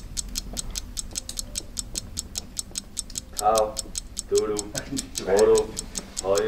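Ticking-clock sound effect, a steady run of sharp ticks at about five a second, with brief voices murmuring over it in the second half.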